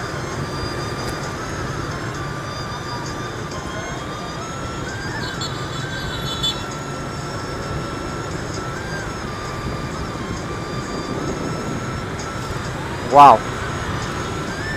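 Riding a motorbike in dense city traffic: steady engine and road noise with a low rumble and a thin whine that drifts up and down a little in pitch. One brief loud voice-like call comes near the end.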